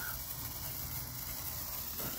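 Handheld Brothers multicolour sparkler burning with a steady, quiet fizzing hiss.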